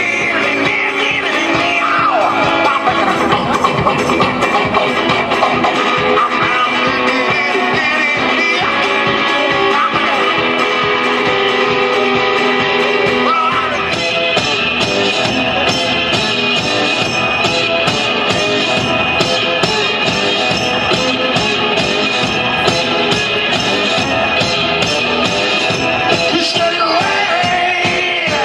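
One-man-band blues: a resonator guitar played with a slide over a foot-played bass drum. About 14 seconds in, the music cuts abruptly to another passage with a steadier, more prominent drum beat.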